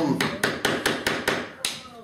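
A mallet tapping quickly on a hand tool held against old nails in a wooden frame, about eight strikes at roughly five a second, to work the old nails out of the frame edge.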